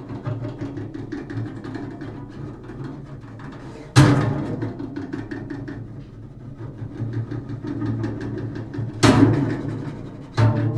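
Double bass struck and rattled on its strings with a short stick: a fast stream of light taps over low ringing notes. Two hard strikes, about four seconds in and again near the end, each ring on and fade.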